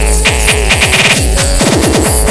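Hardcore gabba track at 140 BPM built from 8-bit samples in FastTracker II: a fast roll of kick drums, each falling sharply in pitch, under a held synth tone.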